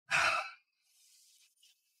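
A person's short, breathy sigh, about half a second long, near the start, followed by a faint hiss.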